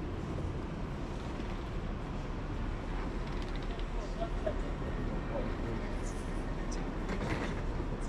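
Steady background noise of a large terminal hall: a low even rumble with faint voices of passers-by now and then.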